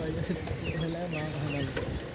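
Bicycle drivetrain ticking and rattling, freewheel and chain, as the bike rolls along, with a short sharp click about a second in and a voice talking in the background.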